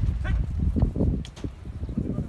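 A herd of cattle shuffling and stepping on dry dirt, with irregular low hoof thuds and knocks. There is a short call just after the start.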